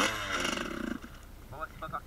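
1986 Kawasaki KX125 single-cylinder two-stroke engine firing with a buzzy rattle for about a second on a start attempt, then cutting out suddenly: it does not keep running.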